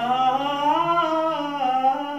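Male voice singing one long held note that slowly rises in pitch and then falls.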